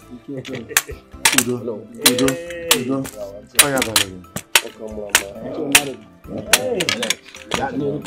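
Men's voices, unworded, over background music with many sharp, irregular clicks running through it.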